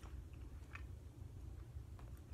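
Faint chewing of a thin, crisp Oreo Thins sandwich cookie, with a few soft clicks, over a low steady hum.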